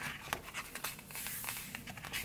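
Paper sticker-book pages being handled and turned by hand: light rustling with many small scattered clicks and taps.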